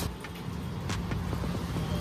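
A steady low rumble with a few faint ticks on top.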